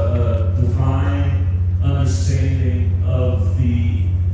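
A man's voice amplified through a handheld microphone and PA, with pitched, drawn-out phrases over a steady low hum.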